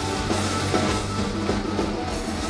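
Live hard rock band playing: a Les Paul-style electric guitar plays over a drum kit and bass.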